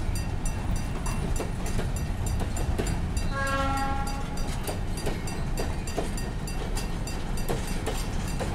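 Container freight train cars rolling past: a steady rumble with wheels clicking over the rail joints. A brief horn note sounds about three and a half seconds in.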